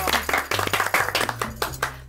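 A small group of people clapping, a dense irregular patter of handclaps, over a soft background music bed.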